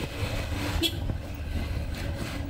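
Van engine and road noise heard from inside the passenger cabin while driving: a steady low rumble.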